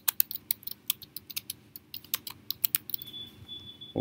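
Computer keyboard keys clicking in a quick, uneven run as a short phrase is typed, stopping a little before three seconds in.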